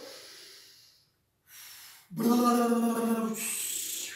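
A woman blowing hard through her lips as the big bad wolf's breath: a breathy blow fading away in the first second, a short puff, then a loud, steady voiced blow held for just over a second that trails off into a hiss.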